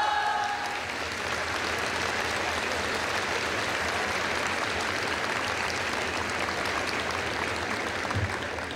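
Audience applauding in a large hall, a dense steady clatter of many hands. A held voice dies away in the first second.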